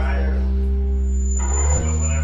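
Electric guitar through an amplifier: a low chord held and left ringing, then another struck near the end. A thin high whine sounds over it for about a second.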